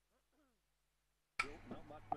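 Dead silence for about the first second and a half, then faint background sound cuts in suddenly: a low hum with distant voices and a few small clicks.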